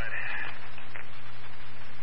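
Fire department dispatch radio channel between transmissions: a steady hiss of scanner static over a low, constant hum.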